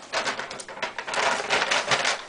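Rustling as clothing and shopping items are handled: a fast, dense run of crinkly scratches that grows busier after the first half-second.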